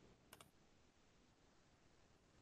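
Near silence with two faint clicks close together about a third of a second in: a computer mouse clicking to advance the slide.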